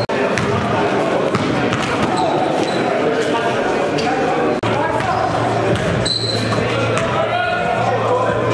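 Live gym sound of a basketball game: the ball bouncing on the court, short sneaker squeaks and players' voices, echoing in a large hall. Two brief dropouts, right at the start and just past halfway, where the footage is cut.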